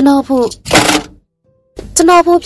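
Speech only: a voice narrating in Burmese in short phrases, with a brief hiss about a second in and a short pause before the voice resumes near the end.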